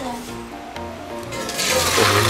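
Water rushing and splashing as a pan of blanching water and seafood is poured through a wire-mesh strainer into a pot, starting about a second and a half in, over background music.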